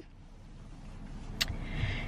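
Low rumble of a car, heard from inside a car cabin, slowly growing louder, with one sharp click about one and a half seconds in.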